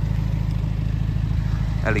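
BMW M135i's turbocharged four-cylinder engine idling: a steady, even low rumble.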